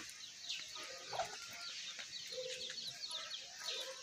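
A few short hen clucks, over a constant background of many small birds chirping rapidly in high, quick notes.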